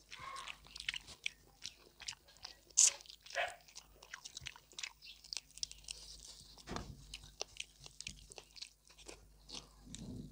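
Close-miked eating of pork belly curry with rice: wet chewing and lip smacking with many short clicks. The sharpest, loudest click comes just under three seconds in, and a low thud comes near seven seconds.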